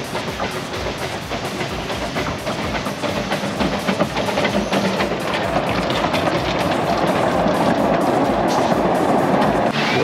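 Narrow-gauge steam train rolling past on its track, wheels clattering over the rails and growing louder as the locomotive draws near, with music playing underneath.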